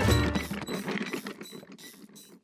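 Cartoon sound effect: a low thump, then a quick ratchet-like run of mechanical clicks, about six a second, that fades away.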